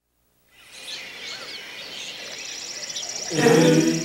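Outdoor nature ambience fading in about half a second in: scattered chirping bird calls over a hiss, joined by a high, rapidly pulsing trill. Near the end a voice sings "A".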